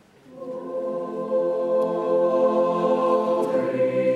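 Mixed choir of men's and women's voices entering softly after a brief silence and singing a sustained chord that grows louder. The harmony shifts and the lower voices come in stronger about three and a half seconds in.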